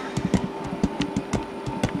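Irregular knocks and clatter of a large resin statue being handled and picked up, several bumps a second, over a steady room hum.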